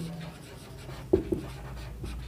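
Whiteboard marker writing on a whiteboard: faint scratchy strokes, with two brief soft knocks a little past the middle.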